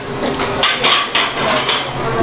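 A quick run of about half a dozen sharp knocks and clatters from kitchen pans and utensils being handled.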